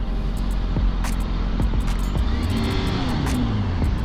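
Sport bike engine running under way with wind rushing over the helmet microphone, its pitch shifting as the rider pulls away.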